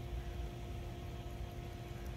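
Steady low background rumble with a faint constant hum above it, unchanging throughout.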